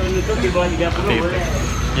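Steady road-traffic rumble from vehicles on a busy city street, with voices over it.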